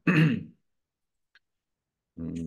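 A man briefly clearing his throat right at the start, followed by dead silence with one faint tick partway through.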